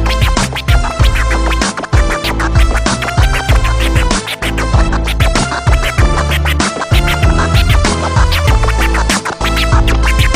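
Hip hop instrumental break: a heavy bass-driven beat with DJ turntable scratching, many short, quick back-and-forth pitch sweeps over the beat, and no rapping.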